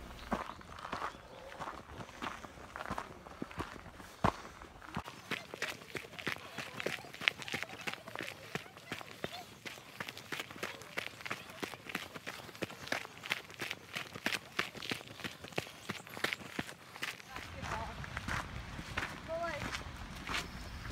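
Footsteps of a hiker walking uphill on a dirt and rock trail: a steady run of short scuffs and steps.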